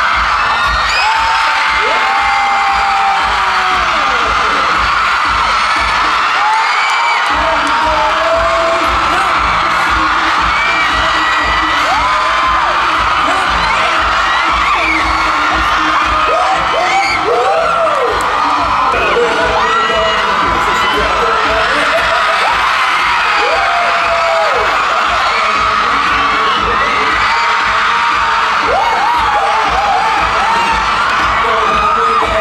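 Dance music with a steady pounding beat playing over an audience of fans screaming and cheering, with many high shrieks. The beat cuts out for about a second around seven seconds in, then comes back.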